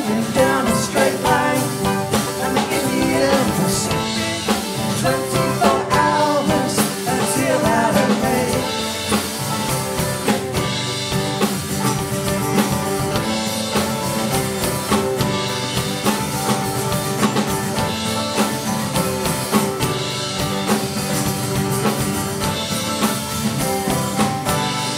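Live folk band playing an instrumental passage: strummed mandolin and acoustic guitar with cello and a drum kit keeping a steady beat.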